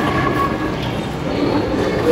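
Steady rumbling, clattering noise of light-up kiddie ride cars moving across a tiled mall floor.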